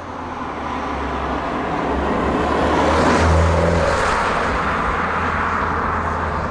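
MINI Roadster driving past: a low engine hum and tyre and road noise build to a peak about three seconds in, then ease off a little.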